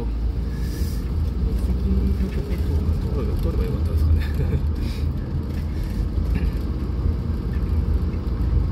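Car in motion heard from inside the cabin: a steady low rumble of engine and tyres on the road.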